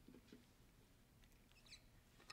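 Near silence: hall room tone with a few faint clicks and a brief faint high squeak near the end.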